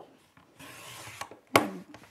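Thick paper rustling as a sheet slides across the work surface for about half a second, then a single sharp tap about one and a half seconds in.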